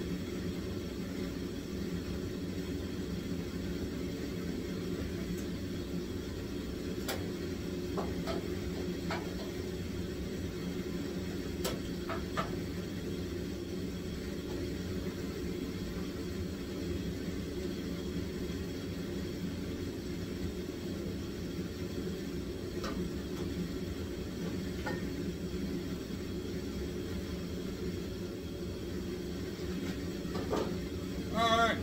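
Steady low machine hum in a small room, with a handful of sharp, spaced-out metal clicks and clinks from hand tools working on a stripped race car's front end.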